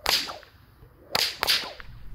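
A 16-plait, 6-foot kangaroo leather bullwhip being test cracked on a newly finished whip. It gives sharp cracks, one right at the start and two more close together just over a second later, as its cracker snaps.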